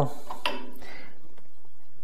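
One light metallic click about half a second in, then a faint short scrape, as the bolts on the back of a bandsaw's aluminium rip fence are loosened with a hand tool; otherwise only steady room tone.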